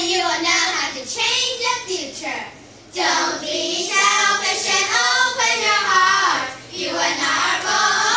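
A group of children singing a tune together in unison, in sustained phrases with short breaks between them.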